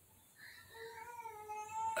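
A faint, drawn-out animal cry, starting about half a second in and held at a nearly level pitch for about a second and a half.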